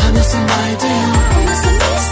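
A J-pop R&B song: a female voice sings a chorus line over a programmed beat with deep, booming kick drums and a steady bass.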